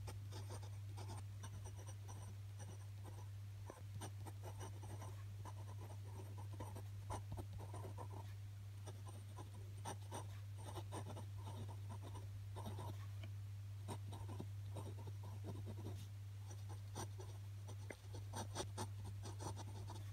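Glass pen with a spiral-grooved glass nib scratching on paper in many short strokes as cursive words are written by hand, over a steady low hum.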